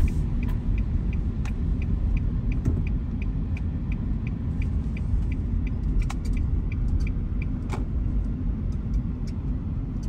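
Steady rumble of a car's engine and tyres on a snow-covered road, heard inside the cabin, with the turn-signal indicator ticking evenly about three times a second until it stops partway through.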